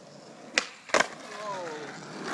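Skateboard trick on pavement: two sharp clacks of the board a little under half a second apart, the second the louder, followed by a short voice sliding down in pitch.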